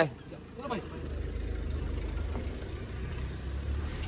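A car engine running close by as a low, steady rumble that grows louder about a second in and then holds.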